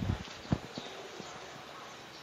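Bottle of fuel injector cleaner being emptied into a car's fuel filler neck: hollow knocks and glugs, the loudest about half a second in, then fainter irregular taps.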